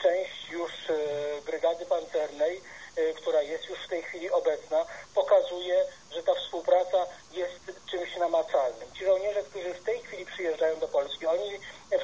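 Continuous speech in a thin, narrow-band voice with no deep bass, as from a broadcast playing through a laptop's small speaker.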